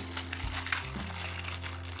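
Clear plastic blister packaging crinkling as it is handled, in scattered light crackles over soft background music.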